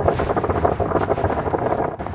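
Rustling and scuffing of a glove being pulled on and worked down over the hand, a dense, irregular run of crackles and rubbing.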